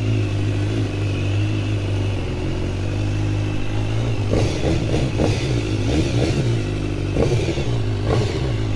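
BMW S1000R's inline-four engine running at low revs, steady for the first few seconds, then rising and falling with the throttle from about halfway as the bike pulls away and rides off.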